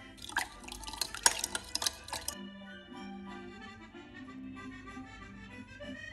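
Spoon clinking and scraping against a glass bowl for about two seconds as salt is stirred into water to dissolve it, over light background music that carries on alone afterwards.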